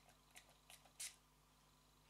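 Aveda aromatic hair mist spritzed from its pump spray bottle onto hair: three short, faint hisses about a third of a second apart, the last the loudest.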